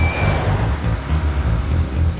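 A deep, uneven engine rumble: the cartoon sound effect for a boxy, jeep-like car driving.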